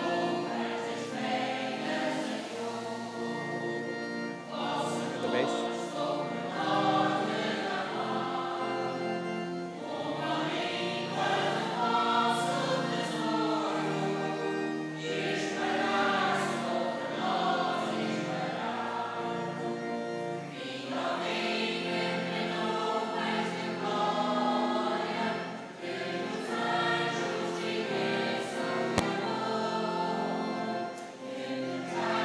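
Church choir singing a hymn, its voices holding long notes that change from phrase to phrase. A single brief click sounds near the end.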